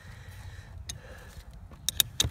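Metal clicks from a 14 mm combination wrench on the nut of a steering-shaft universal-joint bolt as the nut is worked loose: one faint click about a second in, then two sharp ones close together near the end.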